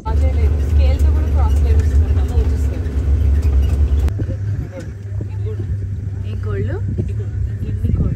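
A vehicle engine running with a loud low rumble, whose note shifts about four seconds in, with people's voices talking over it.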